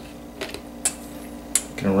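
Three short clicks as wet, raw perch fillets are laid onto a perforated plastic shaker tray, over a steady low hum.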